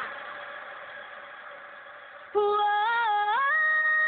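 A pop song thins to a faint fading held note, then about two seconds in a voice comes in loud on a long sung 'ohhh', stepping up in pitch near the end.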